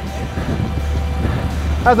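A low, steady rumble under background music; the rumble cuts off shortly before a man's voice comes in near the end.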